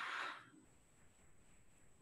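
A woman blowing out a long breath, miming blowing into a bagpipe's blowpipe; it fades out about half a second in, leaving near silence.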